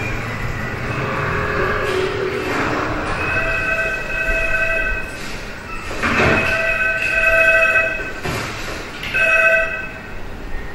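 Train running with a noisy rumble, then its multi-tone horn sounds three times: two long blasts and a shorter one near the end.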